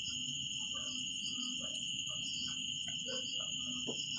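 Steady high-pitched insect chirring, such as crickets, running evenly throughout, with faint soft scattered rubbing sounds beneath it.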